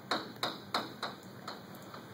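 Chalk tapping and scratching against a blackboard as words are written: a quick run of about five sharp taps, roughly three a second.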